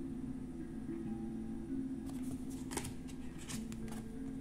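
Oracle cards being handled and slid over one another, a quick run of light clicks and slaps in the second half, over soft background music with sustained low notes.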